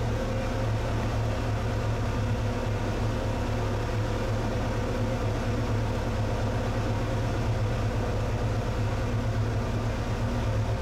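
Glass-bottom boat's engine running steadily: a deep, even hum with a few faint steady tones above it, heard from inside the hull.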